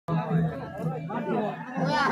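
Several voices talking at once, over a low, evenly repeating beat.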